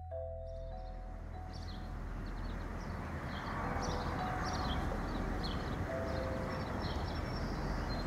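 Chime tones fade out in the first second or so. Then outdoor ambience takes over: a steady background noise with small birds chirping repeatedly.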